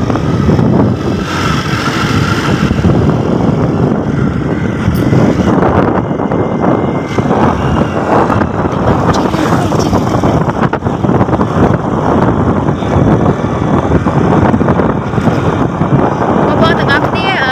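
A motorbike running while being ridden, with loud wind rumble on the microphone.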